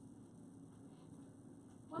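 Near silence: faint, steady room tone with a low hum, and no distinct events.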